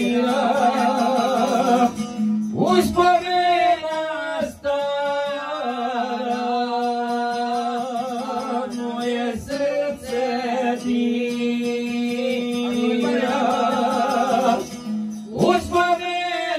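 A man singing a folk song, accompanied by a strummed long-necked lute (šargija) holding a steady drone under the melody.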